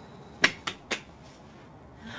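Three short, sharp clicks in quick succession, about a quarter second apart, about half a second in, over quiet room tone.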